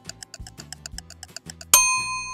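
Toy thermometer's sound effect: rapid, even ticking at about nine ticks a second while it takes a reading, then a bright electronic ding near the end that rings on, signalling that the reading is done.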